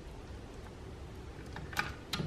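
Quiet room tone, then a sharp click near the end as a hand works the rifle scope's elevation turret.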